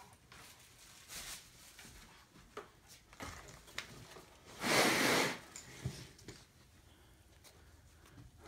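Handling of an IWI Tavor rifle as it is carried and laid on a table: light clicks and knocks, with one brief sliding noise about five seconds in, the loudest sound.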